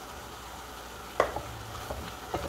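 Sautéed ground meat with chopped tomato sizzling quietly in a pot, with one sharp click a little past a second in and a couple of lighter clicks near the end.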